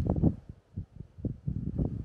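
Wind buffeting the microphone in irregular low rumbling gusts, choppy with brief dropouts where noise suppression cuts in.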